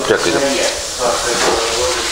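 Speech over a steady background hiss.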